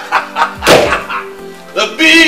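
A front door swinging shut with a single thunk about two-thirds of a second in, over background music. A short voiced exclamation comes near the end.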